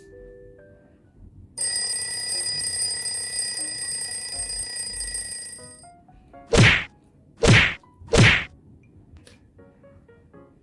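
Alarm clock sound effect ringing steadily for about four seconds, then stopping suddenly. Three loud cartoon whack sound effects follow in quick succession, under a second apart.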